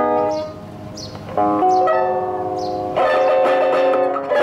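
Ten-string classical guitar played solo: a chord rings out and fades, then after a short lull a new chord is plucked about a second and a half in, followed by a louder, fuller chord near three seconds that rings on.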